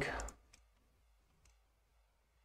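A spoken word trails off at the very start. Then it is quiet apart from two faint clicks from working a computer, about half a second and a second and a half in.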